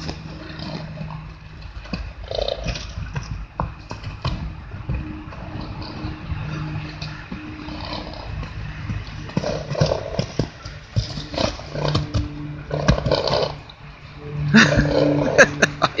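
Wind buffeting the microphone, with a Tennessee Walking Horse mare moving about close by and snorting several times.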